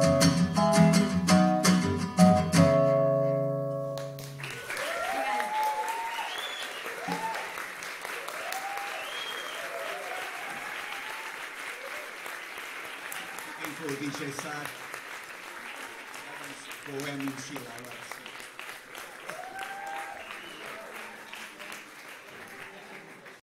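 A guitar song ends on a final ringing chord, and about four seconds in the audience breaks into applause with cheers and shouts, which slowly die away.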